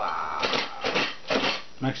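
Wrapping paper rustling and a cardboard gift box being handled and turned over in a child's hands, in irregular scratchy bursts.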